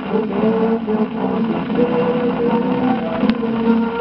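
Music played from a 1940 shellac 78 rpm record: long held melody notes over a steady accompaniment, under the disc's surface hiss, with one sharp click about three seconds in.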